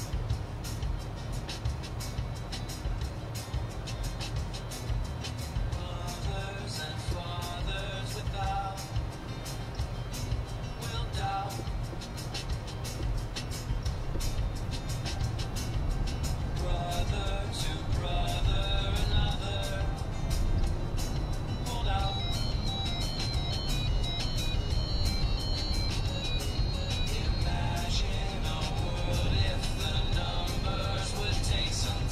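A song playing through the car's cabin speakers, with a dense beat, over a steady low rumble of tyres and road.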